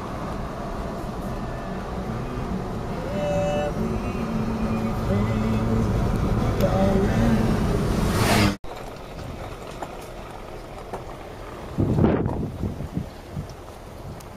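An engine running steadily under faint voices, cut off abruptly about two-thirds of the way through; after that a quieter outdoor noise with one brief loud burst near the end.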